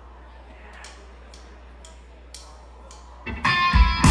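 Rock band starting a song: a low steady amplifier hum with a few faint ticks, then about three seconds in, electric guitar, bass and drums come in loud.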